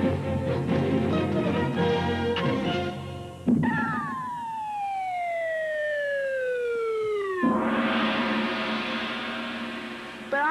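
Light music for the first three seconds or so, then a long falling whistle, a cartoon sound effect that slides steadily down in pitch for about four seconds. It ends in a sudden crash, about seven and a half seconds in, that rings on and slowly fades.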